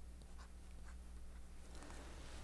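Faint scratching and light taps of a stylus writing on the screen of an E Ink electronic-paper note-taking tablet.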